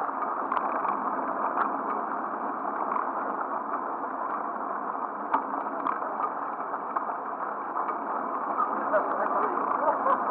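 Steady rushing noise of wind and movement on a running runner's camera microphone in a pack of runners, with a few faint ticks and indistinct voices.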